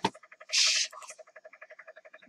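A mouse click, then a short loud hiss about half a second in, over a faint rapid pulsing of about ten beats a second.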